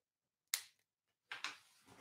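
Near silence broken by a faint short click about half a second in and two softer brief clicks near the end.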